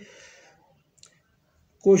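A man's voice trails off, then a single faint click about a second in during a near-silent pause, and the voice starts again near the end.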